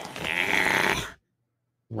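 A drawn-out wordless vocal sound from a person, lasting about a second, then the audio cuts off abruptly into dead silence.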